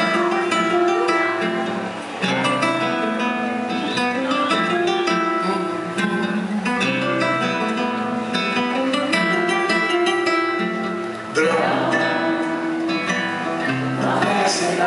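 Two acoustic guitars playing an instrumental passage live, picked melody notes over a moving bass line. About eleven seconds in the sound gets suddenly louder and fuller.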